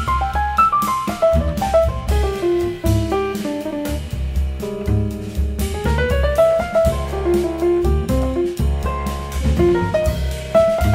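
A jazz quintet playing: drum kit and bass keep time under a fast melodic line of quick running notes that climb and fall.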